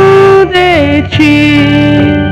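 A hymn sung by a single voice with instrumental accompaniment. The voice holds long notes and steps down twice, to a lower held note about halfway through and again to a lower one just after a second in.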